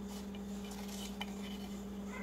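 A steady low hum with a few faint, light clicks of kitchen items being handled.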